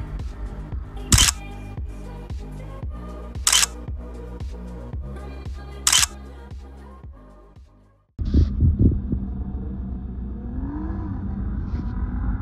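Background music with a camera shutter sound effect three times, about two and a half seconds apart. The music fades out about eight seconds in, and after a brief silence a louder new passage starts suddenly.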